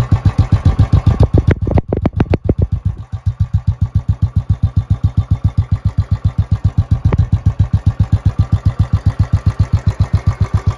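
2014 Royal Enfield Classic 350 BS3's single-cylinder engine idling through its stock silencer, with an even, slow thump of exhaust pulses. A brief throttle blip about two seconds in, then it settles back to idle.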